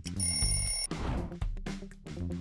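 A bright, steady bell-like ring, lasting under a second, sounds as the quiz countdown timer runs out. It plays over background music with a beat and is followed by a short noisy swish as the screen changes to the next question.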